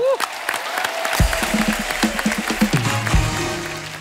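Studio audience applauding, with a short piece of show music whose low bass notes come in about a second in; the clapping and music fade near the end.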